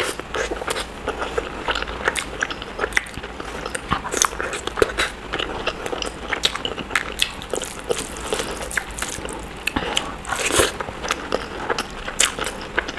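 Close-miked eating: a mouthful of boiled egg and biryani being bitten and chewed, with many small wet mouth clicks and smacks, a louder burst of them near the end.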